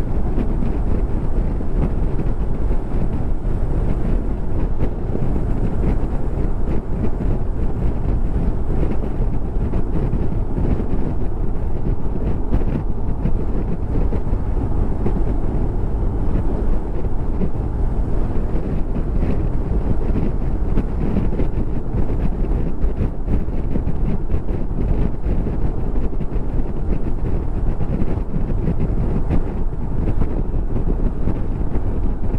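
Steady wind rushing over the microphone of a moving motorcycle at road speed, with the bike's road and engine noise blended underneath.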